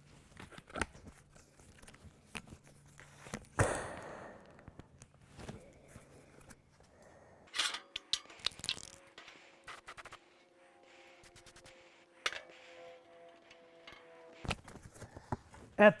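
Short hisses of a Rust-Oleum aerosol spray can, with scattered knocks and clicks of handling.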